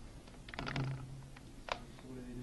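Faint typing on a computer keyboard: a quick cluster of keystrokes about half a second in, then one sharper key click near the end.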